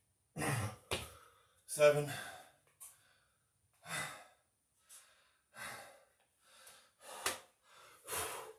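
A man breathing hard, winded from doing Navy SEAL burpees, with heavy exhalations and sighs about once a second. There is a short sharp thump near the end.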